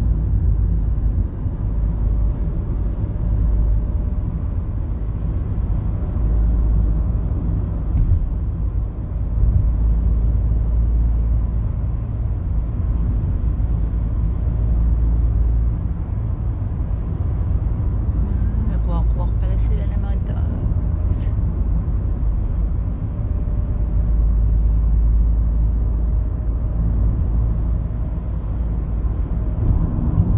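Steady low road and engine rumble heard from inside the cabin of a car travelling at road speed.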